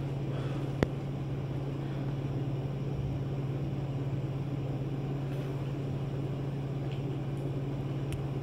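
A steady low hum, with a single sharp click about a second in.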